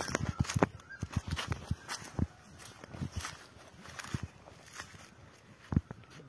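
Footsteps through grass and dry straw on a field terrace: an irregular run of soft crunches and rustles, thicker in the first few seconds, with one sharper step near the end.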